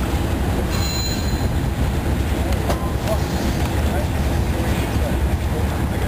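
A loud, steady low rumble of outdoor background noise with faint voices.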